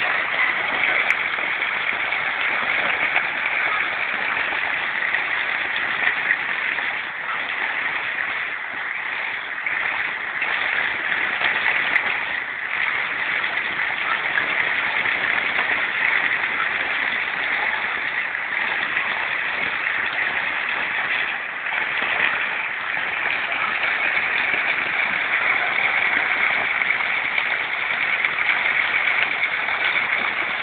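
Floodwater rushing across a street in a steady, unbroken rush, mixed with falling rain.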